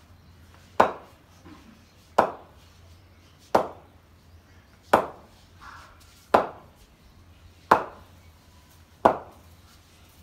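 Cricket bat striking a ball in steady practice, seven sharp knocks about every 1.4 seconds. The hits come off the middle of the bat.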